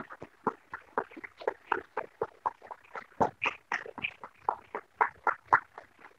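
A few people applauding: quick, uneven hand claps overlapping one another at several a second.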